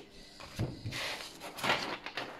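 Soft rustles and scrapes of a stiff oracle card being handled and turned in the hand, a few short touches between about half a second and two seconds in.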